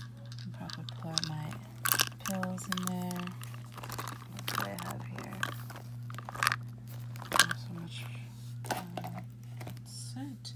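Handling noise from a small leather handbag packed with cosmetics: items shifted by hand and knocking against each other, with scattered sharp clicks, over a steady low hum.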